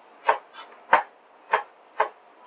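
Chef's knife chopping down through a red onion onto a cutting board, dicing it: about four evenly spaced strokes, roughly one every half-second or so.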